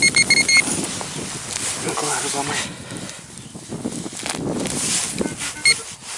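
Handheld metal-detector pinpointer beeping rapidly, a quick run of short high beeps at the start and again briefly near the end, as it is probed through freshly dug soil. The beeping signals a metal target close by in the hole.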